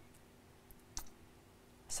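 A computer mouse clicking once, about a second in, with a fainter tick shortly before it.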